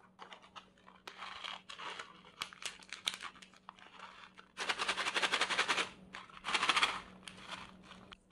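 A foil stick pouch of powdered supplement crinkling as it is pulled from its box and handled, then torn open in two loud ripping stretches, the first about halfway through and a shorter one about a second later.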